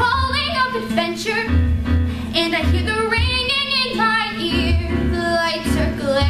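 A young woman singing a solo musical-theatre song, sustaining long notes with vibrato, over a quiet low accompaniment.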